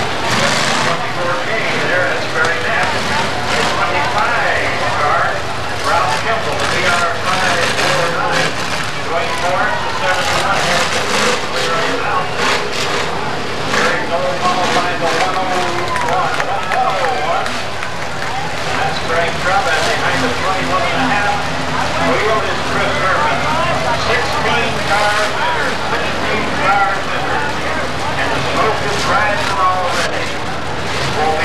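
Demolition-derby cars' engines running on a dirt track, mixed with a steady hubbub of crowd voices.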